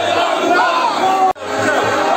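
A large crowd of marchers shouting slogans together, many voices overlapping. A split-second gap in the sound breaks in just past halfway.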